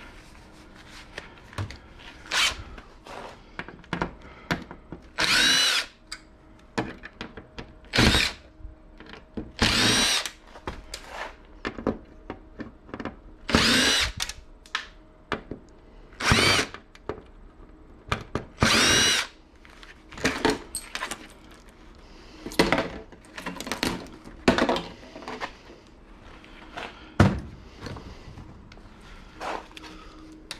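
Cordless impact driver backing screws out of a flat-screen TV's sheet-metal back in about nine short runs, each a second or less, the motor's pitch rising as each run starts. Sharp clicks and clatter of screws and metal come between the runs.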